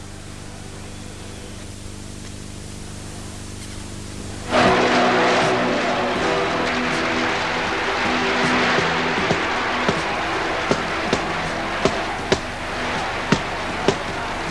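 Film soundtrack of a boxing bout: tape hiss and hum, then about four and a half seconds in, music with a dense noisy background comes in suddenly. From about nine seconds, sharp punch hits land every half second to a second.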